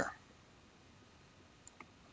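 Two faint, short computer mouse clicks near the end, the rest very quiet.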